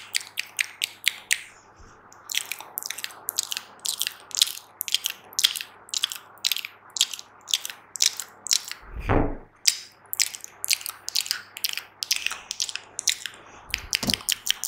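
Fast, wet mouth clicks and pops made close to a sensitive microphone, several a second in an uneven rhythm. A single low thump comes about nine seconds in.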